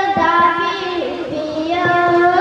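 A boy singing a naat, holding long melodic notes; the pitch dips about halfway through and rises again near the end.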